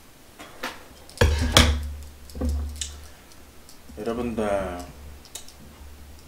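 Sharp knocks and clatter of things being handled at a table, the loudest two about a second in, followed by a brief wordless vocal sound a little after the middle.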